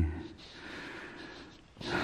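A man breathing close to the microphone: a faint breath out, then a louder breath in near the end.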